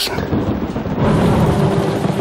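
Thunder rumbling over steady rain, the rumble swelling louder about a second in.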